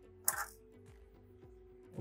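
A single short click about a quarter of a second in, from a spring-clamp terminal on a pool-cover motor control board as the wire jumper is worked out of it. After that only a faint steady background is left.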